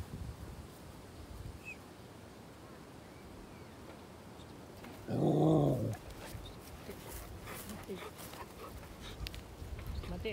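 A dog gives one loud bark just under a second long, about five seconds in, while begging for a treat held above its head.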